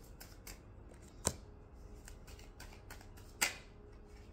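Tarot cards being drawn and handled by hand: faint small ticks and rustle, with two sharp card clicks, one about a second in and a louder one a little past three seconds.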